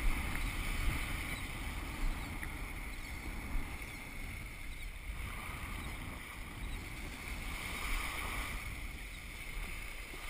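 Wind buffeting the microphone and shallow water washing around the wading angler: a steady rushing noise with a low rumble and a few small knocks.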